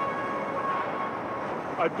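Steady outdoor background noise with a faint, steady whine that fades out about a second and a half in; a man starts speaking near the end.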